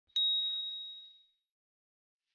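A single bright ding sound effect for an intro title: one clear high tone that strikes sharply and fades away over about a second, leaving silence.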